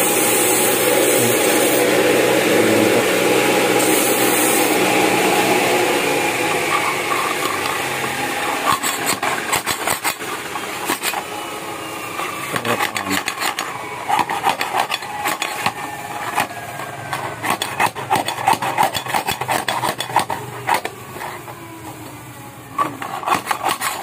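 A steady loud rushing noise over the first six seconds or so fades out. Then comes rapid, irregular metal scraping and clicking as the inlet end of a steel aftermarket motorcycle muffler is worked by hand to loosen its inner pipe.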